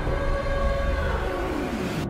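War-film trailer soundtrack: a sustained, ominous chord of held tones over a deep rumble, with one low tone sliding downward and ending just as the sound cuts at the end.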